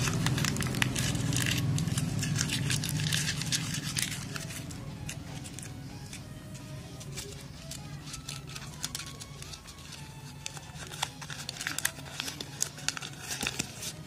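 A new ₹2000 banknote being crumpled and worked into a ball between the hands, crinkling and crackling, as a crush test of the note's paper, then opened out again. A low steady background sound fades out over the first few seconds.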